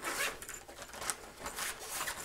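Zipper on a backpack's lid pouch being pulled open in several short rasping pulls.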